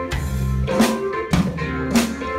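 Children beating a snare drum and a larger drum with sticks, about two strikes a second, over a recorded backing track with guitar.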